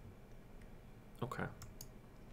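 A few faint, sharp clicks from a computer keyboard and mouse as data is pasted into a spreadsheet.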